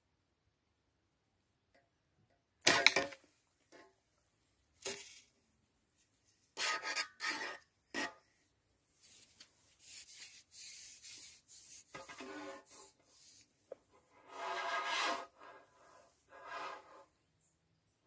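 Irregular bursts of rubbing and scraping, loudest about three seconds in, with longer runs of scratchy noise later on.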